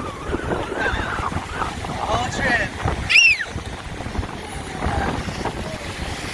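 Wind buffeting the microphone over the wash of breaking surf. Short high voice-like calls come and go, the loudest an arched squeal about three seconds in.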